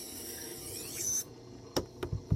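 A 6-inch utility knife's steel edge grinding on a worn, slow-turning Tormek SG250 wet grinding stone on a Tormek T3 sharpener: a steady rasping hiss. The hiss stops a little over a second in as the blade is lifted off the stone, and a sharp click follows near the end.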